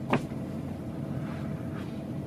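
Steady low background hum, with a short click just after the start.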